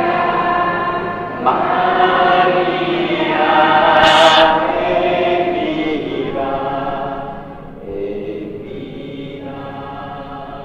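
Many voices singing a hymn together, the sung line running on with shifting pitches and growing softer about seven seconds in. A brief hiss sounds about four seconds in.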